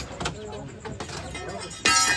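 Sacks and a plastic bag being rustled and knocked about by hand, with scattered clicks, then a sudden loud, harsh cry near the end.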